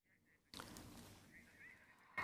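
Near silence: a live broadcast audio feed has dropped out, leaving only faint background hiss from about half a second in.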